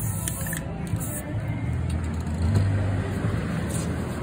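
Aerosol spray paint can hissing in short bursts during about the first second, with music playing in the background.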